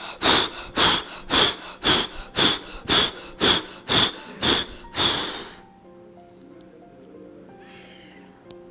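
A woman's forceful exhalations in a yoga breathing exercise (Manduk Kriya), sharp and rhythmic at about two a second, ten in a row; they stop a little past halfway, leaving soft background music.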